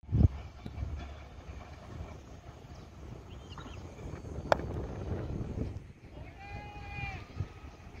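A cricket bat strikes the ball with one sharp crack about halfway through, over steady wind rumble on the microphone; a drawn-out high call follows near the end.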